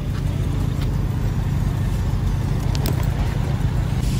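Luggage wheels rolling over paving stones, a steady low rumble.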